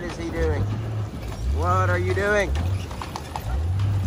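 A pickup truck's engine labouring as it shoves a box trailer through small trees, with branches cracking and snapping from about three seconds in. Over it, a person gives two long, wordless shouts.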